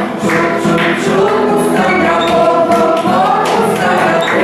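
A group of young voices singing an action song together, with rhythmic hand claps.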